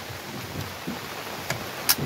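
Telescoping legs of a CVLife bipod being collapsed: two sharp clicks near the end, about half a second apart, the second the louder, as the legs retract and lock.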